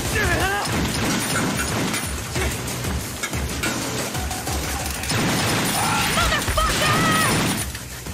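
Automatic gunfire in a TV-drama gunfight: a rapid, continuous clatter of shots and impacts, mixed with a dramatic music score.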